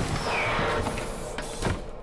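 Sound effect of a cartoon flying car setting down on a metal platform: a steady mechanical whirring hiss, with a knock at the start and another near the end.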